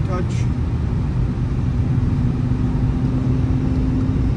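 Audi A5 S Line at road speed, heard inside the cabin: a steady low rumble of engine and tyre noise, joined about a second and a half in by a steady drone.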